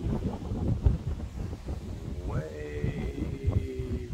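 Wind buffeting the phone's microphone in uneven gusts. About halfway through, one long, steady, pitched call starts with a quick rise and lasts nearly two seconds.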